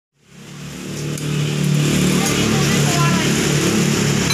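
A motor vehicle engine running steadily, with people talking in the background; the sound fades in over the first second or so.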